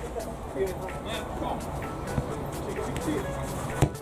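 Background music with faint voices under it, and a sharp thump near the end as a football is struck for a shot.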